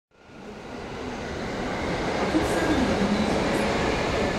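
Railway station ambience fading in: the steady rumbling noise of a train running on the tracks, rising over the first two seconds.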